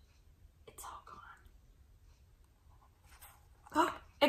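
Mostly quiet, with a soft whispered, breathy sound about a second in and a woman's voice starting briefly near the end.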